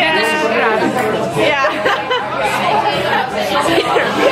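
Several young women's voices talking and exclaiming over one another, with laughter.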